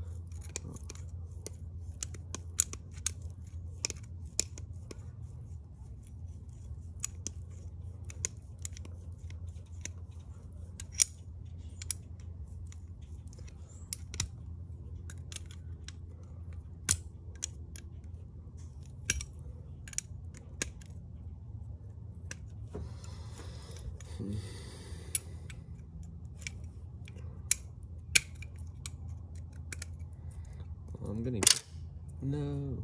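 Pliers gripping and twisting a stuck screw out of a small metal part: irregular sharp metal clicks and snaps, over a steady low hum.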